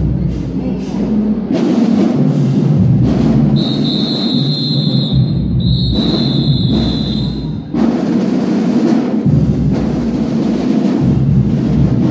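Loud drum-heavy music with a pounding bass drum beat. In the middle a high steady tone is held for about four seconds, broken once.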